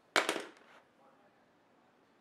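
A wooden colored pencil set down on a wooden tabletop: a quick cluster of sharp clicks and taps just after the start, dying away within about half a second.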